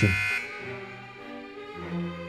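A steady electronic buzzer, likely the debate timer's, cuts off suddenly in the first half second. Slow string music with cello and violin follows, quieter than the buzzer.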